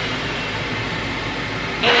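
Flying Pig Pro high-velocity dog dryer running with its airflow turned down low: a steady rushing of air. Just before the end it suddenly gets louder and a whine comes in.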